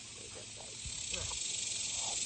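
Insects buzzing in a steady high hiss, growing a little louder about a second in, with a few faint snatches of voice underneath.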